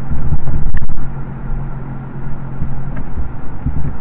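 Steady low hum with a deeper rumble under it; the rumble is loudest in the first second.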